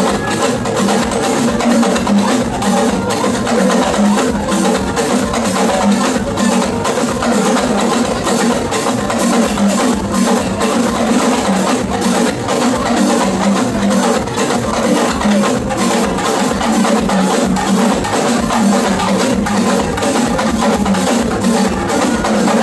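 Yoruba drum ensemble, with hourglass talking drums among the drums, playing a dense, unbroken rhythm of hand and stick strikes.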